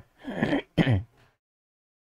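A man clearing his throat in two short bursts.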